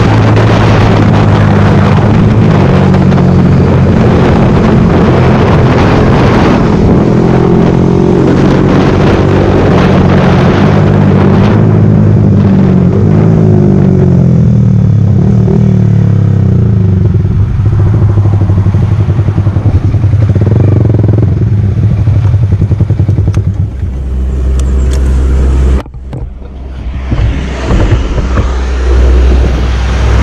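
Sport motorcycle engine heard from the rider's seat, running steadily at road speed. It drops in pitch in steps through the middle as the bike slows, then settles to a low idle near the end as the bike comes to a stop.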